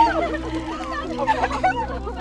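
Several voices crying out and shouting over one another, with a steady held background-music tone beneath.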